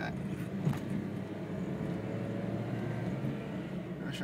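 Car engine and tyre noise heard from inside the cabin while the car accelerates to overtake a slow truck; the engine note creeps up a little. There is a brief tick under a second in.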